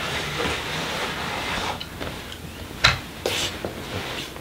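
Roberts rolling carpet tucker's nylon wheels rolled along the carpet edge against the skirting board, a steady rubbing scrape for about two seconds. A sharp knock follows near three seconds in.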